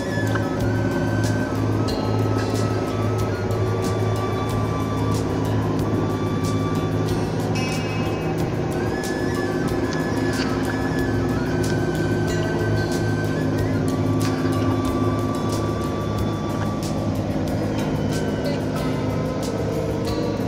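Background music with held low notes and a melody moving above them.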